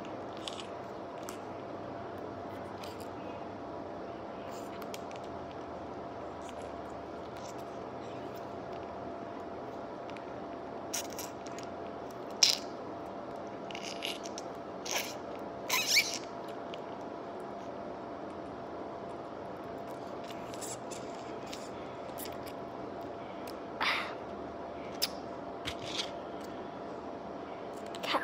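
Scattered short clicks and squelches of a child biting and sucking jelly out of a soft plastic jelly pouch, over a steady faint room hiss with a thin hum. The clicks come in a cluster about halfway through and again a few seconds before the end.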